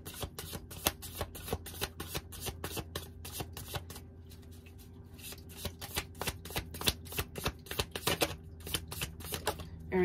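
A deck of tarot cards being shuffled by hand, with rapid riffling and flicking of the cards. There is a short pause about four seconds in, and the shuffling thins out a couple of seconds before the end. A steady low hum sits under it throughout.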